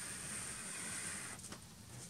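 Pencil tracing firmly over a charcoal-backed photo print pinned to a board, transferring the outline: a faint, even scratching hiss that eases off about one and a half seconds in.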